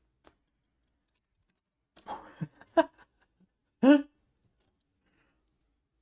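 A man's short wordless vocal sounds: a few soft murmurs about two seconds in, then one brief, louder voiced sound just before four seconds, with quiet around them.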